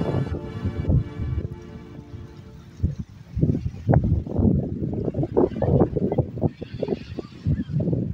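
Background music fades out over the first two seconds. From about three seconds in, wind buffets the microphone in irregular rough gusts.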